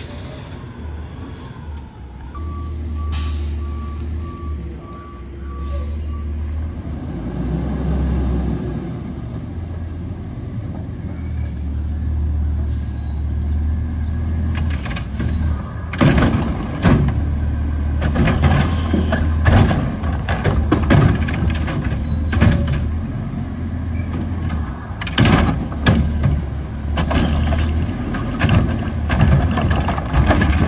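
Heil front-loader garbage truck's diesel engine running, with a short row of reversing beeps and an air-brake hiss a few seconds in. In the second half, the Curotto-Can arm and hydraulics working to grab a cart, with repeated loud clanks and knocks.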